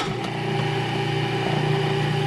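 Countertop food processor switched on and its motor running steadily, spinning the blade to mix flour, salt, oil and yeast water into focaccia dough.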